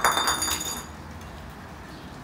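Small glass bottle bouncing and clattering on a concrete floor without breaking, several quick clinks with a high ringing that dies away within the first second.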